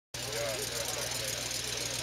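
An engine idling with a steady low pulsing beat, under faint talking voices.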